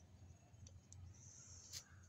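Near silence: a faint low hum with a few soft, short clicks and a brief faint hiss toward the end.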